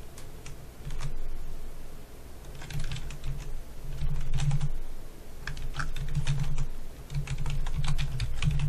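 Typing on a computer keyboard, in several short runs of keystrokes with pauses between them, as an email address is entered.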